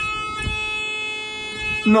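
Elevator buzzer sounding one steady, buzzy tone that stops shortly before the end, while the car sits stuck between floors.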